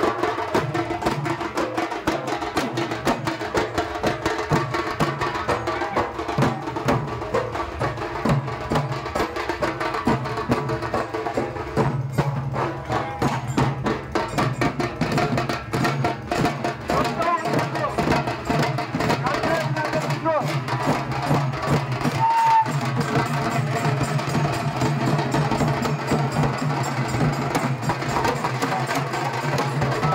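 A troupe of drummers beating slung drums with sticks together, keeping a fast, dense, steady rhythm.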